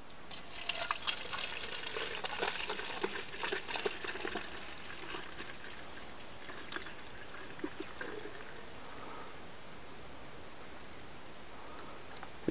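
Soapy water poured from a plastic measuring jug into a narrow-necked plastic spray bottle. For about the first five seconds the pour is uneven, with many small splashes, then it settles into a quieter, steady trickle.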